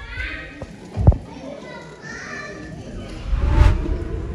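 Young children in an audience chattering and calling out, with a sharp thud about a second in and a louder burst of noise near the end.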